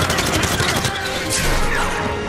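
Dramatic action score with a rapid, dense run of whooshing and hitting sound effects from a red super-speed blur circling two wrapped-up figures.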